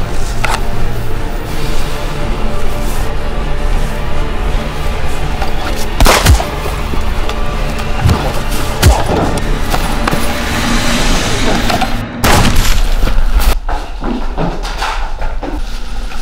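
Film soundtrack music running throughout, punctuated by several sudden loud booms or hits, the strongest about six seconds in and another about twelve seconds in.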